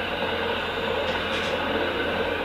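Hokuriku Shinkansen bullet train running past with a steady rushing noise.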